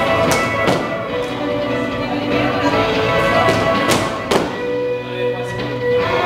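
Recorded dance music playing, with a few sharp knocks: two within the first second and two more about four seconds in.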